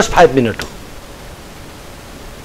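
A man's speech trails off about half a second in, followed by a pause filled only by a faint steady hiss.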